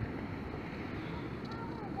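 Steady low outdoor rumble of street and distant machinery noise, with wind on the microphone.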